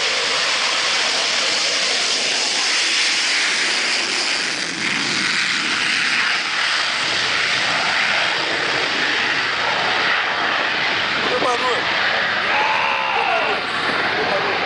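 Dassault Rafale fighter's twin Snecma M88 jet engines in full afterburner during take-off: a loud, steady jet roar as it rolls down the runway, lifts off and climbs away.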